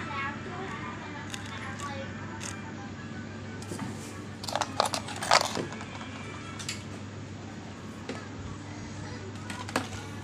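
Faint background voices over a steady low hum, with a short burst of sharp clicks and crackles about halfway through.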